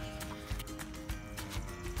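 Background music with a few held notes, with light clicks and a low rumble underneath.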